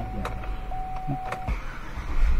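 2007 GMC Yukon's V8 idling just after starting on a freshly installed battery, heard from inside the cabin as a low steady rumble. A steady high whine runs over it and stops with a click about one and a half seconds in.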